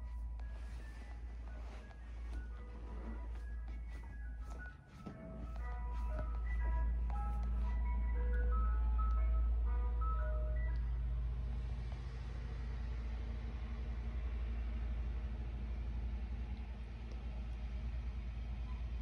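Ice cream truck jingle, a melody of single chiming notes, which stops about eleven seconds in, typical of the truck halting for a customer; a low steady rumble remains after it.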